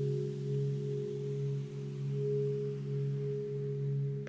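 Background meditation music: a steady low drone of several held tones that swell and fade gently.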